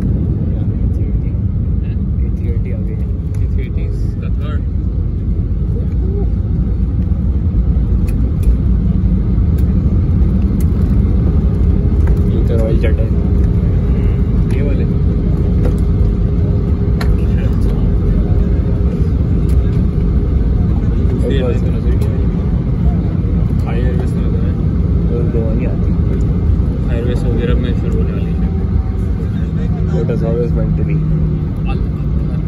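Cabin noise inside an Airbus A320 rolling on the ground after landing: a steady low rumble of the engines and the wheels, with faint passenger voices now and then.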